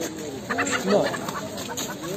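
A chicken clucking, a short cluster of calls about half a second to a second in, over men's voices.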